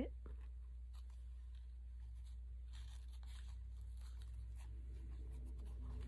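Faint paper rustling and light handling clicks as a paper embellishment is positioned and pressed onto a journal page, over a steady low hum.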